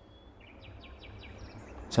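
Outdoor background noise with a low rumble, and a small bird chirping a quick run of short, high notes from about half a second in.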